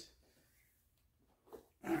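Near silence (room tone), broken by a brief faint sound about one and a half seconds in, just before a man starts speaking.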